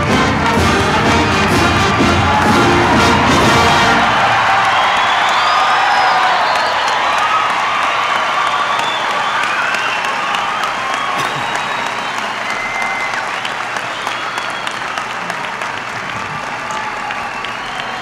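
A student band's brass section playing a fanfare-like tune over crowd applause, stopping about four seconds in. Applause and cheering with scattered whoops carry on after it and slowly die down.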